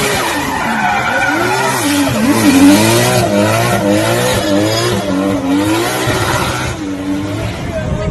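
A car drifting hard through a bend, its engine revving up and down continuously while the rear tyres spin and squeal, loudest a couple of seconds in.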